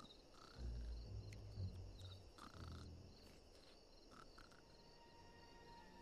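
Quiet night ambience of crickets chirping steadily. A low rumble comes in about half a second in, and again briefly around two and a half seconds.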